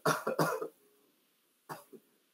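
A man coughing, two quick coughs at the very start.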